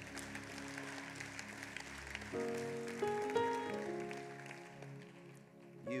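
Church keyboard playing sustained chords under the preaching, moving to a new chord about two seconds in with a few higher notes after. Scattered applause from the congregation under the music, fading away.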